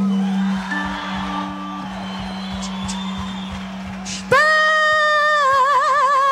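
A steady low hum with faint stage noise, then about four seconds in a woman's voice cuts in loud on one long held sung note with a wavering vibrato, opening the band's first song.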